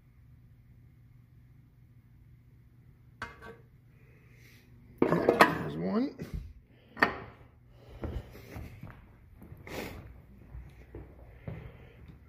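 A faint low steady hum, a single click about three seconds in, then from about five seconds in a run of irregular metallic clanks and knocks from metal parts being handled around the gear case of an old Otis traction elevator machine during an oil top-up.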